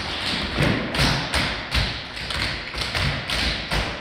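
Tap shoes striking a wooden studio floor as a group of dancers taps together: a rhythm of sharp strikes, about three a second, with scuffing in between.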